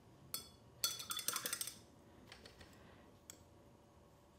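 A single light click, then a quick rattle of sharp clinks with a bright ringing for just under a second: a paintbrush knocked and rattled against a hard container, as when rinsing or tapping it out between colours.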